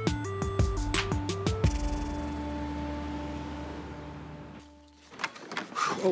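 Short scene-transition music: a quick melody stepping up and down over sharp drum hits, then a held note that fades away about five seconds in. A few faint knocks follow near the end.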